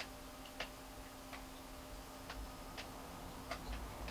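Faint, light clicks and taps on aquarium glass, about six at uneven intervals, over a low steady hum, as an algae cleaner is handled against the tank front.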